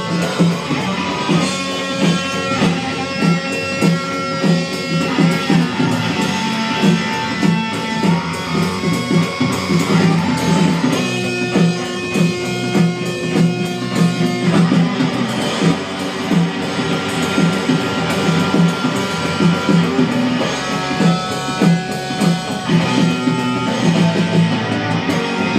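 Garage rock band playing live: electric guitars over bass and a drum kit, with a steady driving beat.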